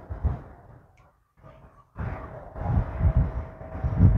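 Wind buffeting the microphone in irregular low bursts, strongest in the second half, with rustling of dry pepper plants as peppers are picked by hand.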